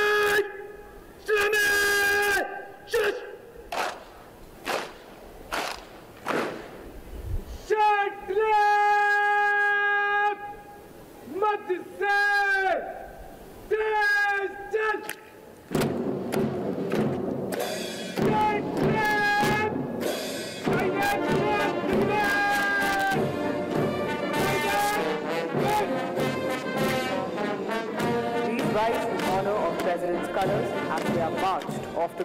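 A single bugle sounds a ceremonial call of separate notes, some short and some long and held. About sixteen seconds in, a military brass band strikes up a march.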